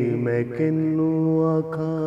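A man singing a Punjabi Sufi kafi in long, drawn-out held notes, stepping down to a new pitch about half a second in and changing note again about a second and a half in.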